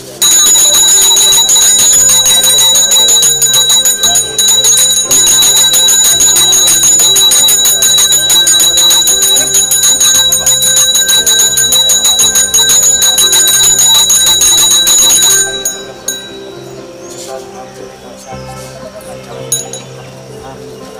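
Brass pooja hand bell rung rapidly and without a break, a loud shrill ringing that stops abruptly about fifteen seconds in. A stepping melody line plays underneath it.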